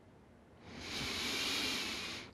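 A long, close breath through the microphone: a rush of air that starts about half a second in, swells, and stops at the end, as a steady, even breath during seated yoga breathing.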